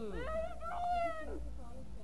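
A teenage boy's voice, muffled by a mouthful of marshmallows in the chubby bunny game, making drawn-out wavering vocal sounds: a long falling note, then a second held note.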